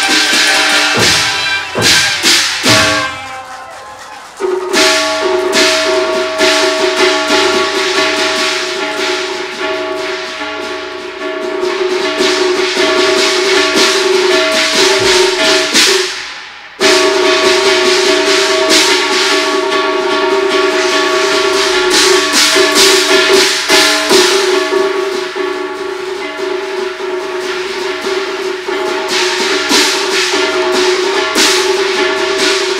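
Cantonese opera ensemble playing: a held melodic line over a busy run of sharp percussion strokes. The music dips briefly about four seconds in, and breaks off and resumes abruptly about seventeen seconds in.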